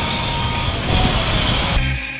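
Wind buffeting the microphone over a steady rush of water, cut off sharply near the end as edited-in rock music begins.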